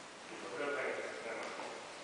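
A person's voice calling out a drawn-out word in a large, echoing gym hall, starting about half a second in and fading over about a second.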